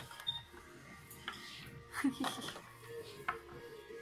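Small hard PVC figurines and pieces clicking and tapping as they are picked up and set down on a tabletop: a handful of light, sharp clicks spaced about a second apart.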